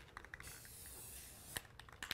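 Aerosol can of barn-red spray paint: a few quick rattling clicks as it is shaken, then a faint steady hiss of paint spraying from about half a second in.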